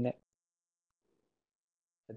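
Near silence: the last syllable of a man's word, then the webinar audio drops to nothing.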